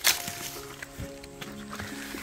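Background music of steady, held notes. Over it, a sharp rustle at the very start and a few smaller crackles, as of brush and dry leaf litter being pushed through.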